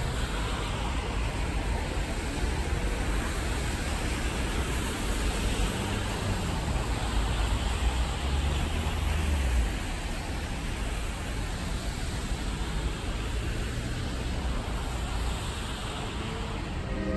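Steady city traffic noise: a hiss with a low rumble that grows heavier just past the middle and then eases.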